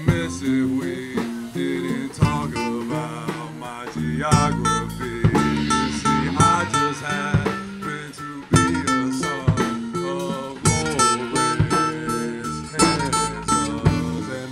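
Live band playing an instrumental passage: acoustic guitar over a drum kit and a second guitar, with cymbal hits getting busier about four seconds in.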